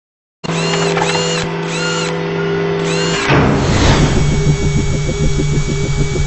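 Produced logo-intro sound effects: a machine-like whirring, drill-like, that starts suddenly about half a second in with a steady hum and repeating high arched tones, then changes a little after three seconds into a fast ratcheting pulse.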